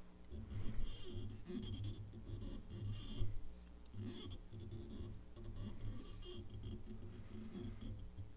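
Faint scratchy rustles in short bursts as fingers wrap medium silver tinsel around a fly hook's shank, over a low steady hum.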